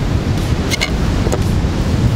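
Wind rumbling on the microphone over the steady wash of breaking surf, with a few light clicks a little under a second in and again shortly after.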